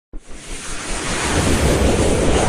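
Intro sound effect: a rushing, wind-like whoosh with a low rumble underneath, building in loudness over the first second and a half.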